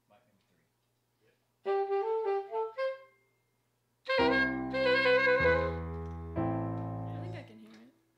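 Digital keyboard playing a saxophone-like voice: a short run of single notes, then three held chords over low bass notes, the last one fading out.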